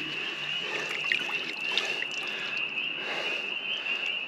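A bundle of bare-root fruit trees lifted out of a bucket of water, with wet rustling and trickling. Night insects hold a steady high-pitched chirr underneath.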